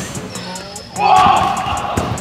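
A stunt scooter rider hitting a large landing bag about a second in: a sudden thud with a rush of noise lasting about a second.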